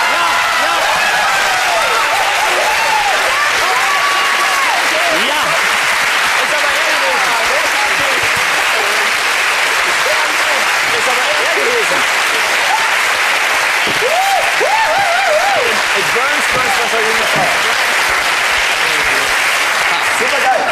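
Studio audience applauding steadily for about twenty seconds, with voices calling out over the clapping.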